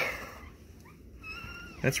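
A brief, faint high-pitched squeak or whine lasting about half a second, holding one pitch and then dropping at the end.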